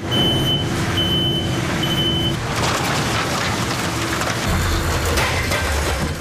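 A delivery box truck backing up, its reversing alarm beeping three times over the noise of its running engine. A heavier low rumble swells about four and a half seconds in.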